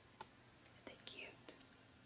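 Near silence: quiet room tone with a few faint clicks and a brief soft whisper about a second in.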